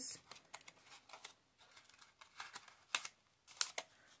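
Faint, scattered light ticks and rustles of old book-page paper as rose petals are curled around a pen.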